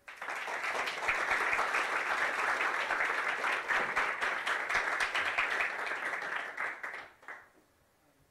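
Audience applauding, a dense clatter of many hands clapping that begins at once and dies away about seven seconds in.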